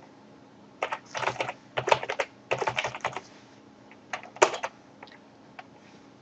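Typing on a computer keyboard: several quick runs of keystrokes with short pauses between them, and one louder key press about four and a half seconds in.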